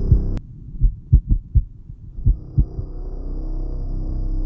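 Film soundtrack: ambient music cuts off sharply about half a second in, leaving a few low, short thumps falling roughly in pairs like a heartbeat. The music swells back in during the second half.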